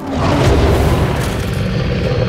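A sudden loud cinematic boom hit that swells into a dense, sustained rumble, with trailer music running under it.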